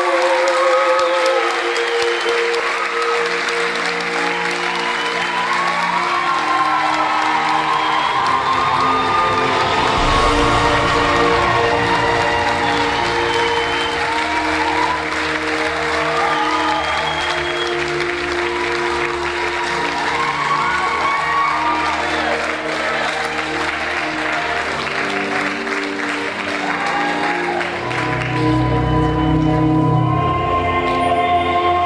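Audience applauding over recorded music with long held notes, the music swelling deeper about ten seconds in and again near the end.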